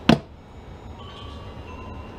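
A single sharp clack as the blade of a wooden soap cutter comes down through a log of cold process soap, with a short "oh" over it. After that, only a low, steady background with a few faint high tones.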